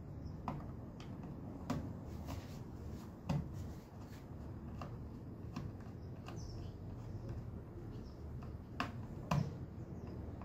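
Faint scattered clicks and scrapes of a screwdriver tightening the battery-positive wire terminal screw on a small solar charge controller, over a low steady background noise.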